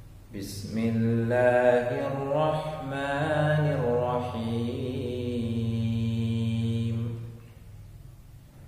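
A man chanting one long line of Arabic Quran recitation in the melodic tajweed style, his voice rising and falling slowly and ending on a long held note.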